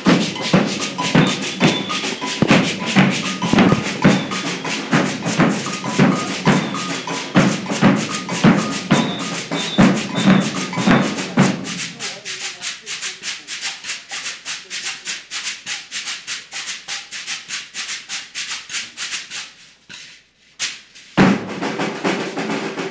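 Women's percussion group playing a rhythm on large rope-tuned bass drums (alfaias) and gourd shakers. For about the first half the drums and shakers play together. Then the drums stop and only the fast shaker rattle carries on, until after a brief pause a loud drum stroke brings the drums back in near the end.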